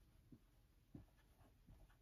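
Faint dry-erase marker strokes on a whiteboard: a few short scrapes, the strongest about a second in.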